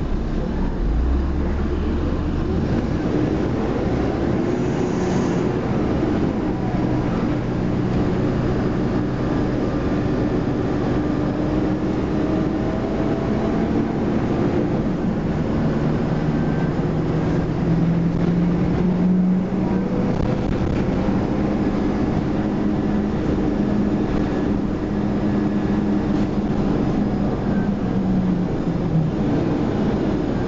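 Interior of a MAN 12.240 midibus under way: its six-cylinder diesel engine pulls through the ZF automatic gearbox over steady road and body noise. The engine note climbs for a few seconds past the middle, then drops about two-thirds of the way through as the gearbox changes up.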